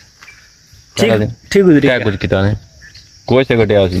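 A steady high-pitched drone of insects chirring in grassland. A man's talk comes over it from about a second in for a second and a half, and again near the end.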